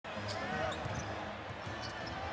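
A basketball dribbled on a hardwood court, a few faint bounces over the steady murmur of an arena crowd.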